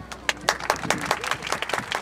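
Audience applauding after a dance performance, a scatter of separate, uneven claps.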